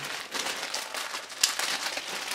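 Clear plastic bag crinkling as it is handled and pulled open by hand, with one sharp crackle about one and a half seconds in.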